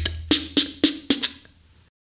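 Beatboxed 808 snare strokes made with the tongue, some with a hissy fricative tail, in a quick run of about four a second that dies away about a second and a half in, then cuts to silence.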